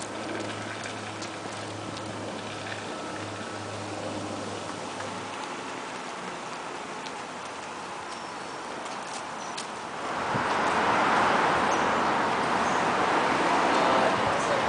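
Outdoor background noise: a steady hiss with a low hum and a few faint ticks, turning into a louder rushing noise about ten seconds in.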